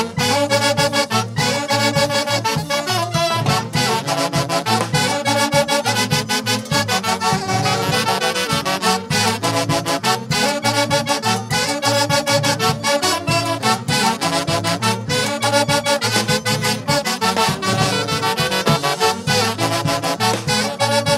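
Live huaylarsh played by a Peruvian orquesta típica: a section of saxophones carrying the melody in unison over a brisk, driving beat on timbales and cymbals.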